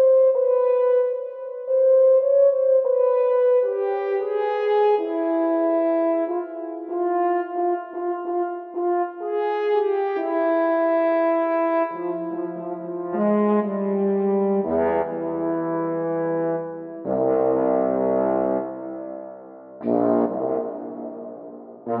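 French horns playing a slow piece in several parts, with held notes moving together from chord to chord. About halfway through, lower notes join and the sound grows fuller, with fresh attacks near the end.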